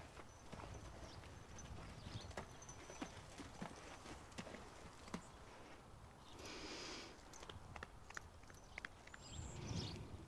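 Faint, irregular hoof falls of a ridden horse walking on sandy arena footing, with a brief soft rush of noise about six and a half seconds in.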